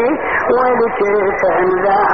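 A man chanting a Shia Muharram lament (latmiyya), his voice rising and falling in a melodic line, with a thin, band-limited quality.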